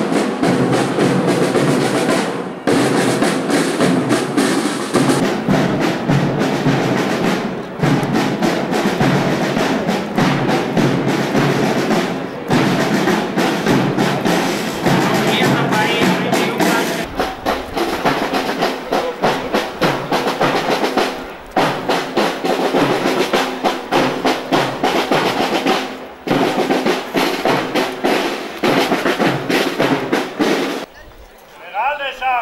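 A march played with snare drum rolls and bass drum, loud and continuous.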